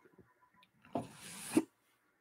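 A brief handling noise at the desk: a soft rubbing rasp lasting well under a second, starting about a second in and ending in a small bump.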